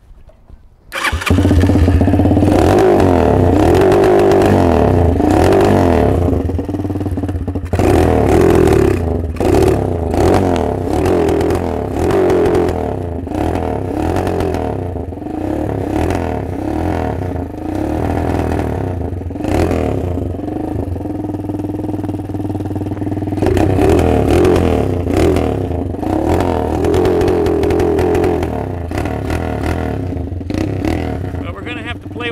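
Lifan 163FML 200cc single-cylinder four-stroke minibike engine starting about a second in, then running loud with the revs rising and falling repeatedly as the throttle is worked. The owner suspects it is running really lean.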